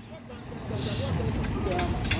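Low vehicle engine rumble that rises about half a second in, with faint voices in the background.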